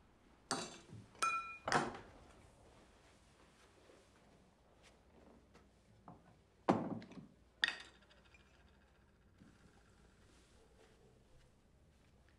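Small glass and ceramic items handled and set down on a wooden dressing table: three quick clinks and knocks in the first two seconds, one with a short glassy ring, then two more knocks in the middle, over quiet room tone.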